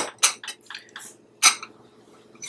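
A glass bowl with a metal fork in it being set down and shifted on a countertop: a few short, sharp clinks and knocks of glass and metal, the loudest right at the start and about a second and a half in.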